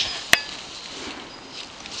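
Donkey grazing, cropping and chewing grass with a crunching sound, with one sharp click about a third of a second in.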